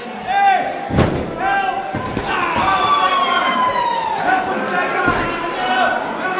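A body hits the wrestling ring's canvas with a loud thud about a second in, with lighter knocks later. Shouting voices run through it, including one long, falling yell in the middle.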